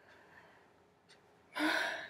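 Near silence, then about one and a half seconds in a woman lets out a sharp, breathy gasp lasting about half a second.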